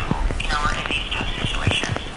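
Muffled, indistinct speech from a caller on a telephone line, too thin to make out words.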